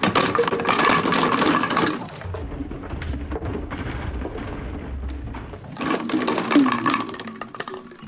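Empty plastic drink bottles clattering as they are thrown into a plastic storage tub and land on one another. A dense rattle of knocks at the start and again near the end, with a duller, deeper-sounding stretch of clatter in the middle.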